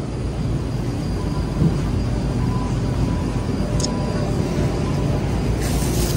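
Shopping cart rolling across a hard store floor, a steady low rumble from its wheels, with a plastic produce bag rustling briefly near the end.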